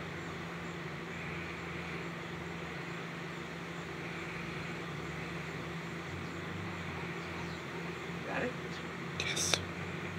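A steady low mechanical hum over faint background noise, with a few brief soft sounds near the end, the sharpest just before the end.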